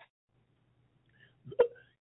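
A pause in a man's talk: near silence, then a single short, sharp vocal noise from him about one and a half seconds in, just before he speaks again.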